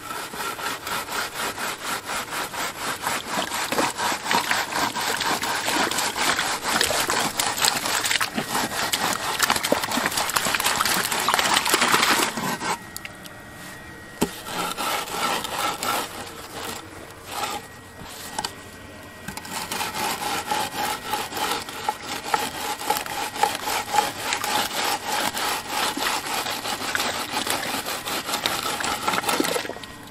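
A wooden screed board scraped back and forth across wet concrete and the rim of a steel drum, a rapid, even rasping rhythm as the concrete top is levelled. The scraping stops for a moment about halfway through, comes in short spells, then runs steadily again.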